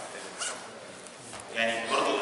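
A man lecturing, with a pause of about a second before his voice resumes near the end.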